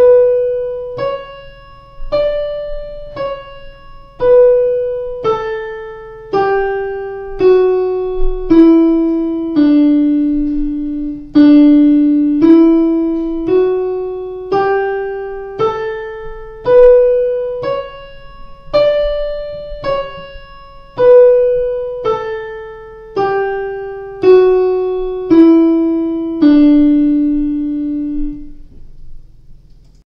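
Yamaha Clavinova digital piano playing the one-octave D major scale slowly, one note at a time, about one note a second. The notes run down the scale, back up, and down again, and the last note is held and fades out near the end.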